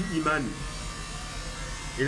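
A man's voice speaking briefly at the start, then a pause filled by a steady background buzz.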